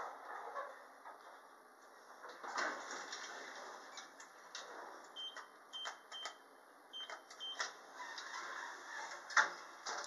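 Buttons on a lift car's Dewhurst US95 panel being pressed, giving a quick run of short high beeps with clicks about halfway through, over faint ride noise from the moving car. A sharp click comes near the end.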